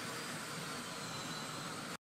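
Gas burner flame running with a steady hiss, preheating the steel deck opening so it does not crack. It cuts off abruptly near the end.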